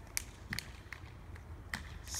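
A few scattered hand claps, about four sharp ones spaced unevenly across two seconds, over a steady low rumble.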